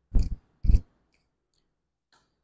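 Two short taps about half a second apart, followed by a few faint ticks, typical of a stylus or pen tapping on a tablet screen while selecting a pen tool.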